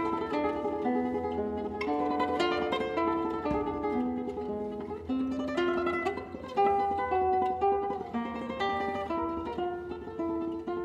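Flamenco guitar playing a solea: a melodic line of separate picked notes, one after another, with the occasional fuller chord. A single low thump about three and a half seconds in.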